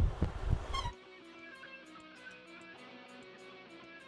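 A quiet recorded guitar track of plucked, picked notes, with faint regular ticks above it. It comes in about a second in, as the louder studio sound cuts off.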